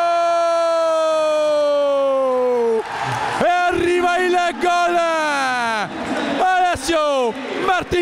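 A male commentator's drawn-out goal cry: one long held shout whose pitch sinks slowly for about three seconds, then more excited shouting. A crowd cheers underneath.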